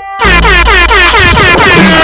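DJ air-horn sound effect firing a rapid string of short falling blasts, about four a second, over a heavy bass beat, starting just after a brief gap at a transition between tracks in the mix.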